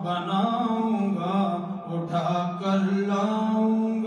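An unaccompanied man's voice chanting an Urdu naat (devotional poem), drawing out long held notes that slide and waver in pitch.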